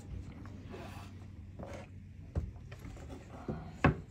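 Faint handling noise: light rubbing and scraping, with a couple of short soft knocks, the louder one near the end.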